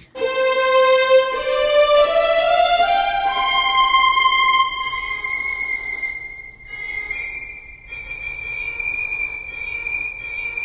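Spitfire Audio Epic Strings sampled string ensemble (long-notes patch) played from a keyboard: sustained bowed notes stepping upward one after another, ending on very high held notes at the top of its range, which have something of a piano sound to the player's ear.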